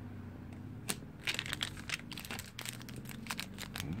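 Thin clear plastic packaging crinkling as it is handled, a dense run of sharp crackles starting about a second in.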